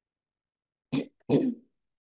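A woman clearing her throat in two short bursts, about a second in.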